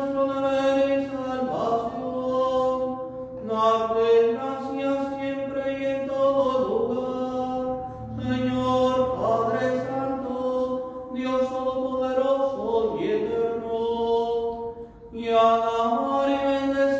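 A priest's single voice chanting part of the Mass in long held notes, in phrases a few seconds long with brief breaks and pitch steps between them.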